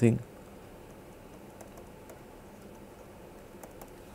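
A few faint ticks of a stylus tapping on a pen tablet as an equation is handwritten, most of them near the end, over low room hiss.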